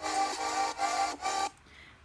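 Intro music from a Panzoid template preview, played over computer speakers: a held chord repeating in even pulses, about three a second, that cuts off about a second and a half in as playback stops.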